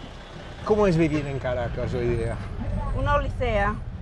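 People talking inside a city bus over the steady low sound of its running engine.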